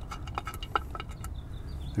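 Scattered light clicks and taps of hands working a rubber vacuum hose and a small fitting off an engine's intake plenum, over a steady low hum.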